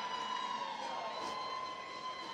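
Hockey goal horn sounding right after a goal, a steady held blare of several tones at once.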